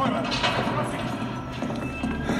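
Footsteps knocking on a hard corridor floor over a low steady rumble.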